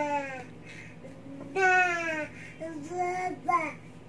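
A one-year-old toddler singing out loud without words: long drawn-out notes that slide down in pitch, then a few shorter wavering notes near the end.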